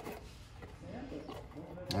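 Quiet handling of a cardboard parts box and a steel suspension ball joint, with a few faint ticks and a brief faint murmured voice.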